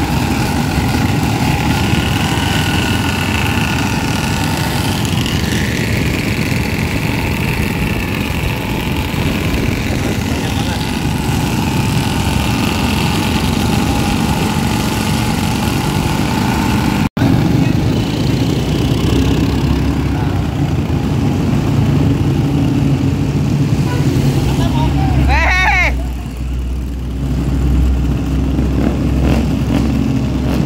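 Several motorcycle and scooter engines running together as a group rides along, a dense steady engine noise. A brief break about two-thirds of the way through, then a short wavering tone and a steadier low engine drone near the end.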